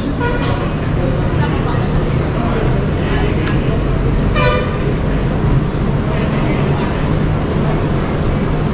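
Steady low rumble of idling engines and road traffic, with one short vehicle horn toot about four and a half seconds in.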